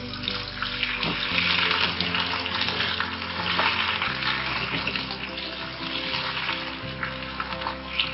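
Raw chicken pieces sizzling in hot oil with browned onions, stirred in a pot; the sizzle is loudest in the first few seconds and then eases a little.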